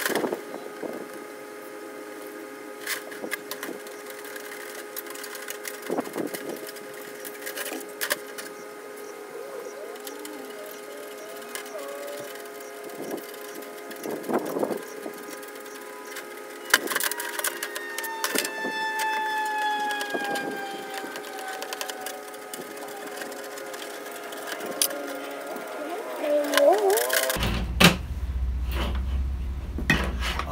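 Wire cutters snipping through welded wire mesh, a sharp click at each cut and the cuts spaced a few seconds apart, with the mesh rattling as it is handled. A steady hum of held tones runs underneath.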